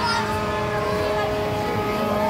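Amusement-ride machinery running with a steady hum of several held tones, with people's voices rising and falling over it.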